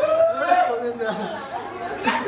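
Indistinct chatter: several people's voices talking in a room.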